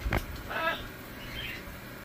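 A blue-and-gold macaw gives one short, soft call about half a second in, just after a brief knock near the start.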